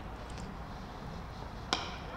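Low, steady background ambience of a cricket ground during play, with one short sharp knock near the end.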